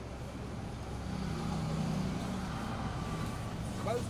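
Low rumble of passing road traffic, swelling about a second in.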